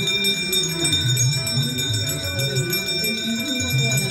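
Small brass hand bells ringing without a break over devotional aarti music, with a low melody wavering underneath.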